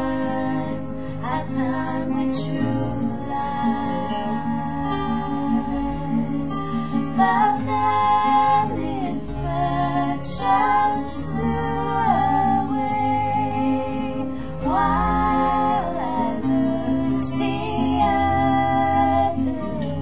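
A woman singing to her own acoustic guitar accompaniment.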